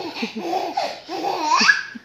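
Young children laughing in a run of short bursts, one laugh rising in pitch near the end.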